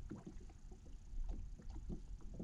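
Small waves lapping against a boat's hull in a series of irregular soft knocks, over a low rumble of wind on the microphone.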